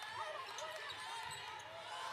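Faint sounds of basketball play on a hardwood court: a ball bouncing, with faint voices in the background.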